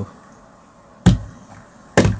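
A single sharp knock about a second in and another right at the end, over quiet room tone.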